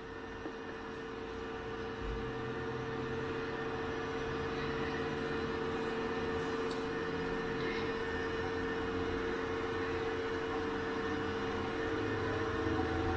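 Steady electrical hum and whir of a Cirrus SR20's cockpit avionics powering up: one steady mid-pitched tone, with a lower hum joining about two seconds in, growing a little louder over the first few seconds.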